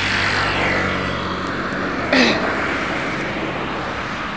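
Road traffic on a highway: cars and motorcycles driving past, their engine and tyre noise running steadily. About two seconds in comes a brief, sharp sound that falls quickly in pitch.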